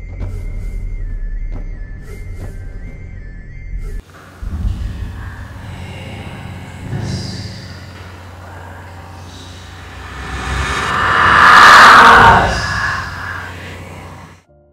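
Horror film score: a low drone under a thin, steady high tone, which breaks off about four seconds in. A noisy, rushing swell then builds to a loud peak near the end and dies away.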